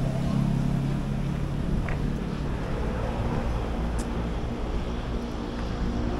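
Steady low hum of city traffic with faint voices of passers-by, and a couple of small brief ticks about two and four seconds in.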